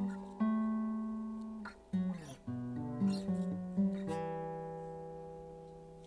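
Acoustic guitar played alone: a handful of strummed chords and picked notes. The last chord, struck about four seconds in, rings out and fades away.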